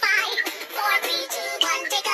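A children's counting song: music with high-pitched singing that wavers quickly in pitch.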